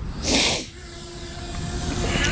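A short, loud burst of hiss near the start, then a faint steady hum from the Hubsan Zino Mini Pro drone's motors as it lifts off.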